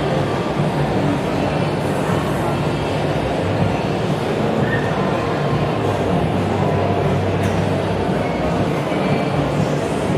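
Corded electric hair clipper running with a steady hum as it cuts hair, over a murmur of voices in the hall.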